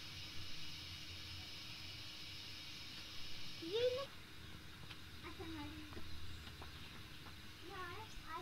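A few short pitched vocal calls: one rising sharply in pitch about halfway through, another falling a moment later, and several brief ones near the end. A steady high hiss runs under them and cuts off suddenly about halfway through.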